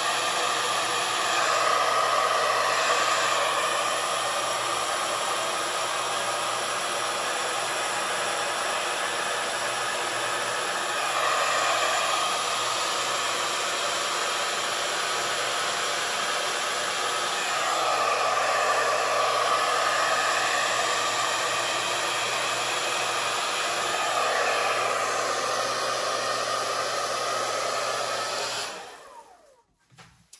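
Handheld hair dryer running on medium fan, cool setting: a steady rush of air with a faint motor whine. It swells and eases several times as it is angled and moved, then switches off suddenly just before the end.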